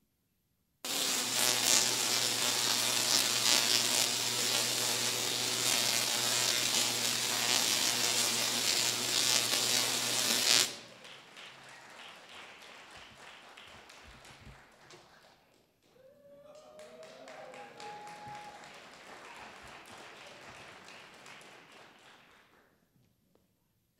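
Tesla coil firing: a loud, steady electric buzz that starts abruptly about a second in and cuts off suddenly after about ten seconds, its arc used to set a torch alight. After it stops comes much quieter applause with a brief whoop.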